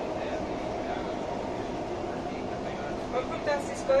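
Inside a Dubai Metro carriage, the train running with a steady hum. Near the end come a few short, louder sounds, the last of them the loudest.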